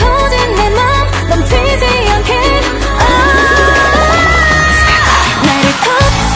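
K-pop song: a woman singing over a steady bass beat, holding one long note through the middle. About five seconds in, the bass drops out under a rising wash of noise that leads into the next section.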